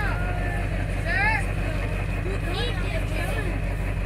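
A vehicle engine running with a steady low rumble, with brief high voices calling out over it.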